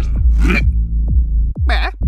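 Bass-heavy dance music with a thumping kick drum whose pitch drops on each hit, about two beats a second. Two short cartoon vocal sounds, one near the middle and one near the end.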